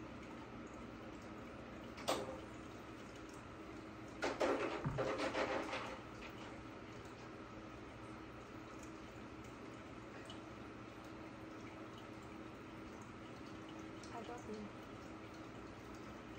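Quiet room tone with a faint steady hum, broken by a click about two seconds in and then a couple of seconds of a person sipping and slurping water from a plastic bottle.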